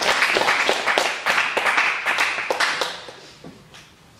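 A small congregation applauding in a hall. The clapping dies away about three seconds in.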